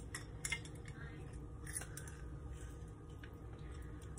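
Faint clicks and light squeezing from a hinged hand-held citrus squeezer pressing a strawberry for its juice, with most of the clicks in the first second, over a low steady hum.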